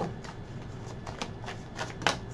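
Tarot cards being shuffled by hand: a soft, steady riffling with a couple of light clicks.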